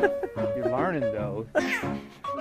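A cat meowing in wavering, drawn-out calls, with a higher rising call near the end, over background music.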